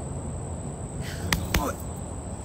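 A short, breathy laugh about a second in, with two sharp clicks close together, over a low steady rumble of outdoor noise on a phone microphone.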